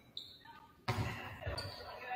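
Basketball bouncing on a hardwood gym floor, twice: a sharp bounce about a second in and a duller one half a second later. It rings in the large gym.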